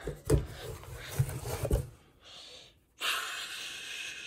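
Muffled handling thumps and rustles for about two seconds, then a short breathy puff and a steady breathy hiss from about three seconds in, like a voice making a long "shhh" sound.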